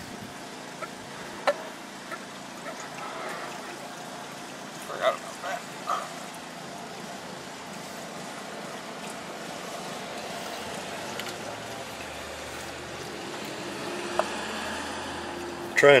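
Steady background noise with a few scattered light clicks, from fingers working the nuts off the oil filter cover plate of a 2002 Suzuki GS500 engine.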